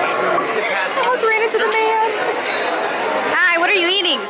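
Chatter of many voices in a busy restaurant dining room, with one voice rising in pitch near the end.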